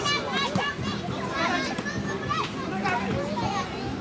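Children playing and calling out, several high voices talking over one another at once.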